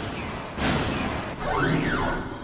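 Synthetic intro sound effects for an animated robot: a surge of noisy whooshing, then near the end a sweeping tone that rises and falls over a low hum.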